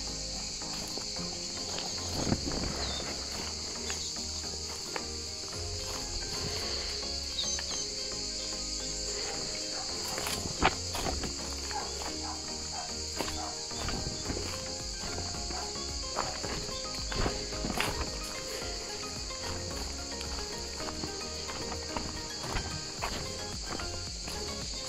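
Cicadas buzzing in a steady high-pitched chorus, with scattered footsteps on dry leaves and stones of a forest path, over background music.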